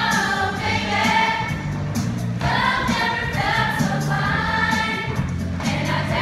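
Mixed show choir singing in harmony over instrumental backing with a steady beat, one sung phrase starting at the beginning and another about two and a half seconds in.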